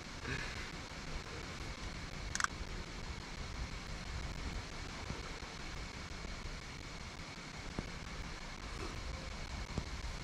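Steady low rumble of wind on the microphone, with a faint steady high whine and a single sharp click about two and a half seconds in.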